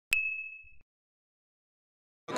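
A single bright ding: a sharp strike with one high ringing tone that fades away within about a second, a title-card sound effect.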